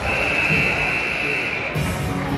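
Hockey arena ambience during a stoppage: crowd chatter with music playing over the arena's public address. A new stretch of music comes in near the end.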